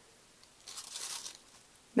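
Piping bag of icing squeezed hard over a cupcake, the bag crinkling in one brief rustle starting about half a second in.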